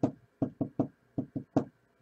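Seven quick knocks on a hard surface: one, then two fast runs of three, the last knock the loudest.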